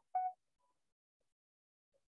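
A short electronic beep, one steady tone lasting about a fifth of a second right at the start, then near silence.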